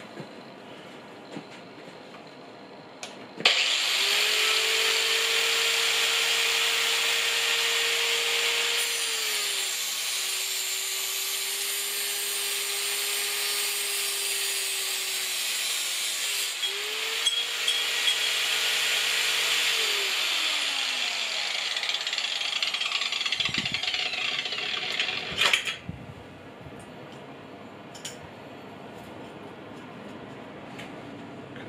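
Parkside PWS 125 E4 angle grinder in a chop-saw stand, switched on about three seconds in, cutting through a pipe with its supplied cutting disc. Its whine drops slightly in pitch under load during the cut. It is then switched off and winds down over several seconds.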